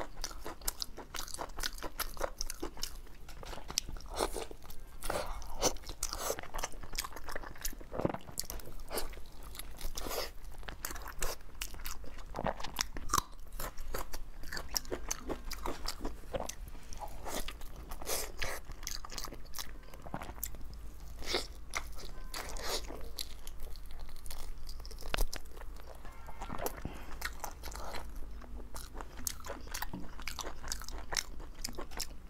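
Close-miked eating: a person biting into and chewing skewered meat-filled balls coated in chili sauce, with many irregular short, sharp mouth clicks and wet chewing sounds.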